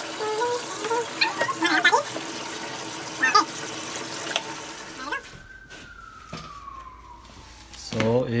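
Water running from a bathtub faucet into a plastic gallon jug, sped up, with short high-pitched chirps over it. After about five seconds the water sound stops and a single clean tone glides steadily downward for about three seconds.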